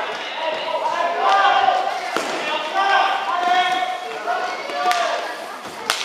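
Rink hockey game sound in an echoing sports hall: voices shouting and calling out while sticks and the hard ball give sharp knocks, the loudest about two seconds in and another near the end.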